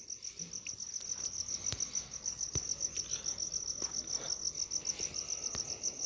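A steady, high-pitched insect trill, cricket-like and rapidly pulsing, runs on unbroken, with a few faint clicks over it.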